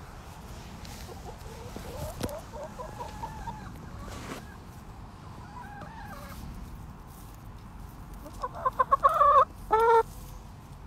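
Backyard hens clucking quietly, then near the end a quick run of loud clucks that breaks into two longer, louder calls.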